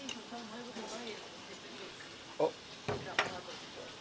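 Background of a working restaurant kitchen: faint voices murmuring, a few sharp clicks about three seconds in.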